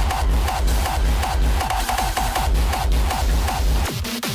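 Hardstyle electronic dance music from a DJ set, played loud with a heavy pulsing bass and a fast repeating beat. The bass drops out near the end.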